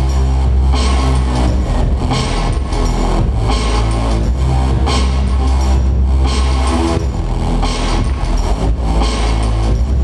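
DJ dance music played loud over the sound system, with a heavy sustained bass and a steady beat of about two strokes a second.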